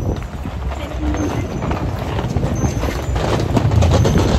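Busy city street ambience heard while walking with a handheld camera: footsteps on paving, wind rumbling on the microphone, and passers-by talking.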